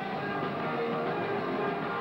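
Hardcore punk band playing live: distorted electric guitar with bass and drums, one dense, continuous wall of sound.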